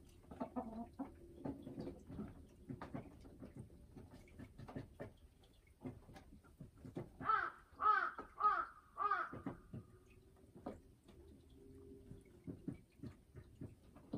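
Hen clucking: a run of short, soft clucks, then four loud calls in quick succession a little past halfway.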